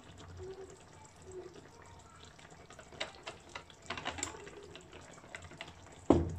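Faint scattered clicks and taps over a low background hiss as ground pepper is shaken from a jar into a pot of béchamel sauce, with the clicks gathering about three to four seconds in.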